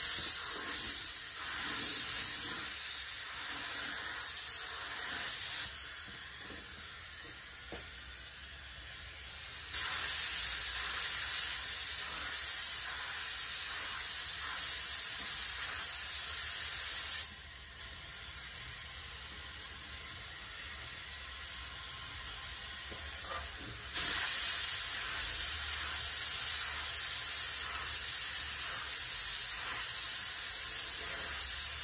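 Gravity-feed paint spray gun spraying base coat: loud hiss in three spells of several seconds each, flickering as the gun sweeps back and forth, with pauses between.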